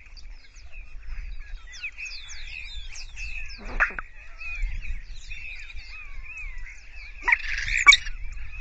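Many birds calling at once: a dense chatter of short high chirps and quick whistles. A louder sound stands out about four seconds in, and another loud burst comes near the end.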